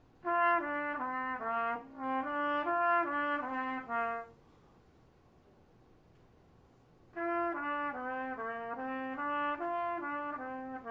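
A brass instrument plays a short phrase of separate held notes, stepping down and back up in pitch, then plays it again after a pause of about three seconds. It is a passage repeated as slow practice.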